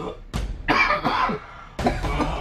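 A man coughing harshly in several bursts, the longest in the middle.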